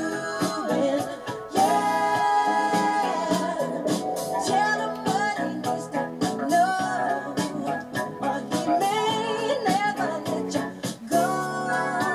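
A recorded song playing: a singing voice over instrumental backing with a steady beat.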